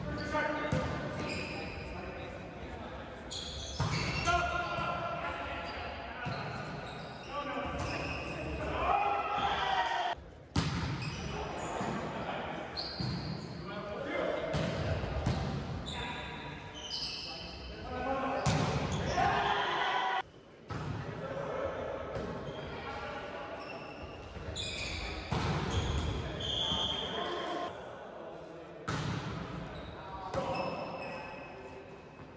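Volleyball rally in a large echoing gym: repeated sharp smacks of hands and forearms hitting the ball, mixed with players calling out to each other.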